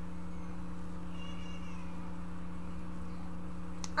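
Steady low electrical hum, with one faint, short, high-pitched squeak about a second in.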